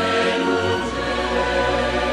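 Background music: a choir singing long sustained chords, with the low bass note stepping down to a deeper pitch about a second in.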